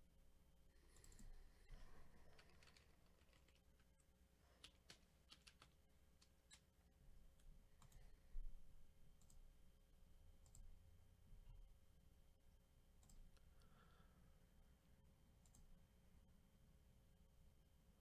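Near silence with faint, scattered clicks and taps, clustered about a third of the way in, with one louder tap around the middle.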